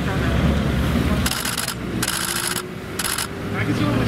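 Three short, scratchy rubbing strokes on glossy photo cards as they are handled, about a second apart.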